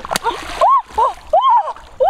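A string of short, rising-and-falling excited cries over splashing in shallow muddy water as a large catfish is grabbed by hand, with one sharp smack just after the start.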